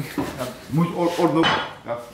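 Light clinks and clatter of dishes and cutlery, with a man's voice speaking briefly in the middle.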